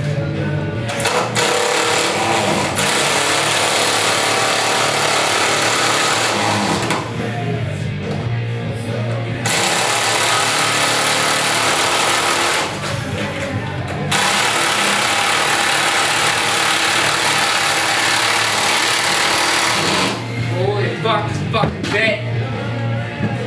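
Handheld power drill running overhead in three long bursts of several seconds each, with short pauses between.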